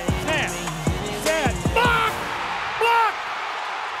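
Background music with a heavy beat: deep bass-drum hits through the first half and short pitched stabs, over a steady rushing noise in the second half.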